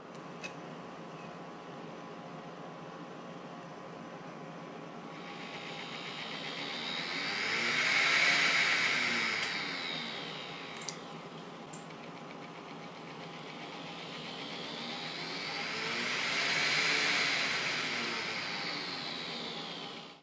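Small 12 V blower part-cooling fan on a 3D printer hot end, driven by PWM, with a steady hum and whine beneath. Twice it swells up in speed and back down, the whine rising and then falling in pitch, with a few faint clicks near the middle. A 220 µF capacitor wired across the fan leads to smooth the PWM makes no audible difference to the whine.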